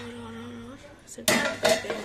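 A stainless steel lid being set onto a frying pan of simmering noodles: two sharp metallic clanks, the second about half a second after the first, covering the pan so the noodles cook faster.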